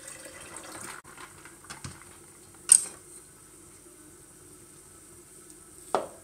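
Ice-cold water pouring into a glass blender jar, stopping about a second in. A sharp clink follows a couple of seconds later, the loudest sound here, and a knock comes near the end.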